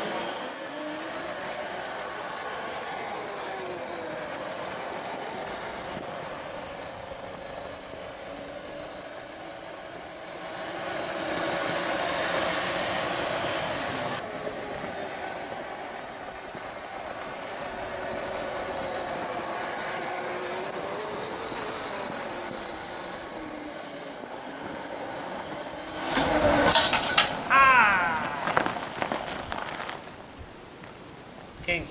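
Electric drive of a quad converted with a Kunray 72-volt motor and chain, whining as it rides, the pitch slowly rising and falling with speed. Near the end comes a louder burst of clattering knocks and squealing as the chain's connecting link comes off.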